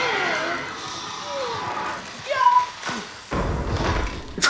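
Soundtrack of a TV episode: voices, then a heavy low thud that lasts for the last half second or so.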